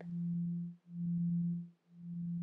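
A low, pure, steady drone tone that swells and fades away about once a second, in slow even pulses.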